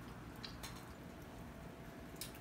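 Faint table sounds of hands picking apart chicken wings, with a couple of soft clicks about half a second in, over a low steady room hum.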